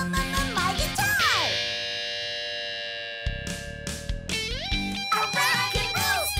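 Rock band music led by electric guitar. About a second in, the guitar slides down into a long held chord that rings out alone. The drums and band then come back in, with more sliding guitar notes near the end.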